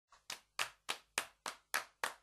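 Hand claps in a steady, evenly spaced beat, about three and a half a second, each one sharp and short, with the first one faint: a clap rhythm in the opening of a music track.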